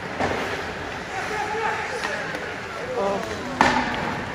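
Ice hockey game heard from the stands: indistinct voices over steady rink noise, with a small knock just after the start and a sharp crack of play about three and a half seconds in, the loudest sound.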